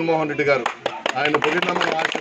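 A man's voice trails off, then about half a second in a rapid, irregular run of sharp clicks begins and carries on.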